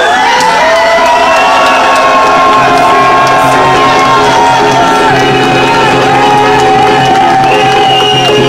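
Live rock band playing, with long held notes from electric guitar sustained over several seconds, while a crowd cheers and shouts.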